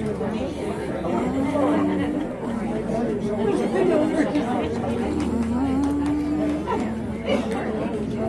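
Indistinct chatter of several people talking over one another. A low steady hum joins about five seconds in.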